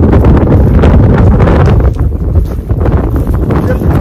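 Wind buffeting the microphone: a loud, low rumble that eases somewhat about two seconds in.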